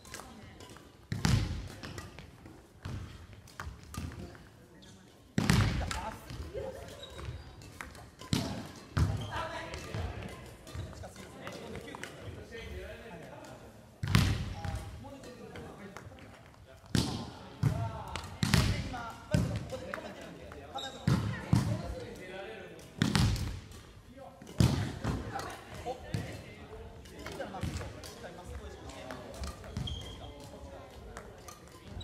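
Badminton practice in a gymnasium: loud, irregular thuds and smacks every few seconds from feet landing in lunges on the wooden floor and rackets hitting shuttlecocks, echoing in the hall, with voices chattering in the background.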